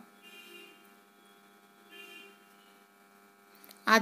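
A low, steady hum in a quiet moment, with two faint, brief sounds, one about half a second in and one about two seconds in. The pouring of the food colour makes no clear sound.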